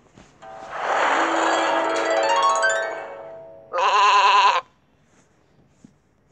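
Animated storybook app sound effects: a shimmering, magical chime swell with tones sliding downward for about three seconds, then a short wavering sheep bleat.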